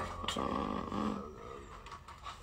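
A man's low voice humming for under a second, fading out, over a faint steady background drone.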